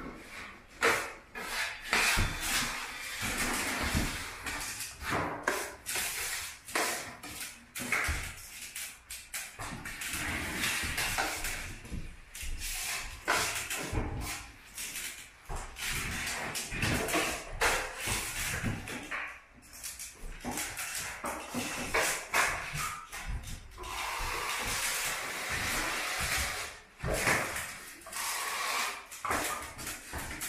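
Steel drywall knife scraping and spreading joint compound along a ceiling joint in repeated strokes, with many short clicks and taps between them.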